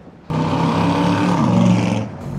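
A motor vehicle's engine running hard and loud. It cuts in suddenly just after the start, and its pitch dips in the second half.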